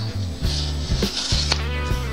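Background music with a steady bass line, over which a paper sticker is peeled off a plastic blister pack: a soft ripping hiss with a few light clicks of the plastic.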